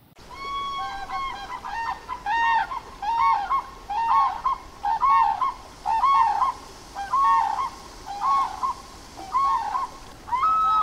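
Grey crowned cranes giving repeated honking calls, about one a second, some calls overlapping.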